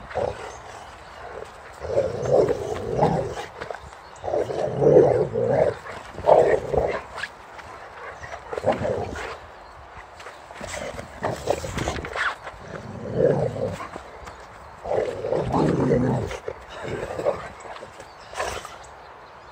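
Boxer dog growling through a ball held in its mouth during rough play, in about six bursts of a second or so each.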